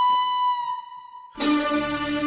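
Instrumental intro of a devotional song's backing track: a flute holds a long note that fades out. About a second and a third in, the accompaniment comes back with a steady lower sustained note over a drone.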